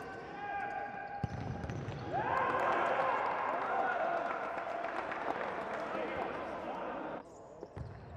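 Futsal ball being kicked and bouncing on the hard court of an indoor sports hall, with echoing voices shouting. The shouting swells about two seconds in and cuts off suddenly about seven seconds in.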